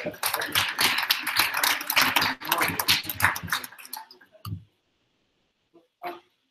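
A room of people laughing together for about four seconds, dying away with one short last sound a little after four seconds in.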